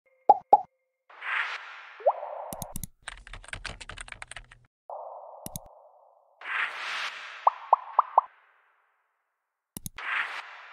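Animated interface sound effects: two pops, soft whooshes, a rapid run of keyboard-typing clicks as a search is typed, single mouse clicks, and a quick string of four pops.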